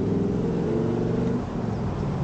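Motorcycle engine running at low speed as the bike creeps forward, its note rising and falling slightly.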